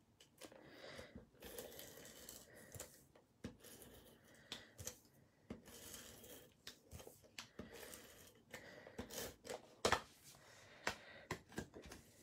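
Faint scratchy rubbing and small clicks of a hand-held adhesive runner laying adhesive on a cardstock panel, with paper handled and rustled. A sharper click comes a couple of seconds before the end, as the paper pieces are moved together.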